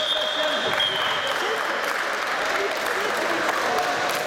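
A referee's whistle, one long, steady blast that ends about two seconds in, stopping the wrestling action. It sounds over crowd applause and shouting voices.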